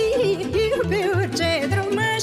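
Romanian folk song (muzică populară): a heavily ornamented melody with vibrato over band accompaniment with a steady bass line.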